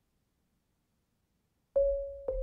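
Silence, then a single marimba note struck near the end, ringing on at a middle pitch as it fades.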